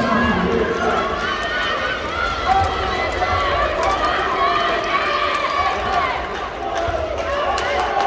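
Live indoor handball game: several voices calling and shouting at once, players running on the court, echoing in a large arena, with a few sharp knocks near the end.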